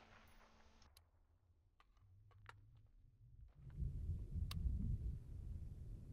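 Quiet background with a few faint clicks. About halfway through, a low rumble comes in, and one sharp click sounds over it.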